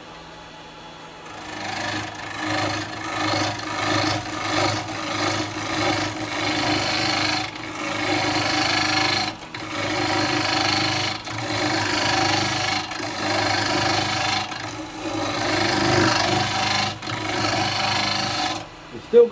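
Carbide woodturning tool cutting the outside of a spinning wet-wood bowl blank on a lathe: a continuous rough scraping, starting about a second in, that swells and eases with brief breaks every couple of seconds as the tool is worked across the blank, over the lathe's steady hum. The blank is still being brought round.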